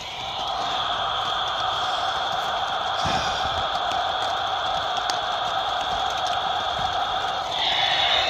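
RadioShack handheld CB radio on channel 34 giving out a steady static hiss through its small speaker, with no station answering the call.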